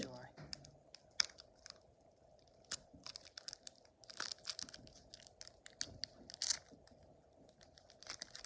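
Foil wrapper of a Pokémon trading-card booster pack crinkling and tearing as it is opened by hand, in irregular crackles. A faint steady hum sits underneath.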